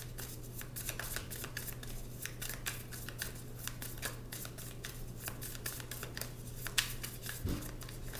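A tarot deck being shuffled by hand: a long run of quick, soft card clicks and flicks, over a steady low hum.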